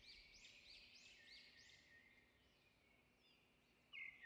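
Near silence, with a faint bird chirping in the background: a quick run of short high chirps in the first two seconds, then a few fainter ones.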